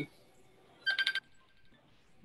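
A short burst of a phone ringtone about a second in: a quick warbling trill of high electronic tones lasting about a third of a second, the sign of an incoming call.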